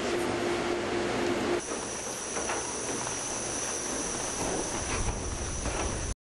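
Steady rushing air noise of ventilation equipment with no let-up. About one and a half seconds in, a cut changes it to a brighter hiss carrying a steady high whine.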